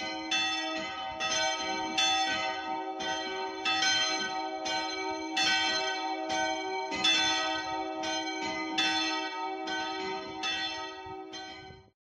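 Church bells ringing in a steady run of strikes, about three a second, each tone ringing on under the next; the ringing stops just before the end.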